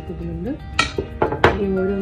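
A glass dish knocking and clinking about four times in quick succession as it is set down, over soft background music.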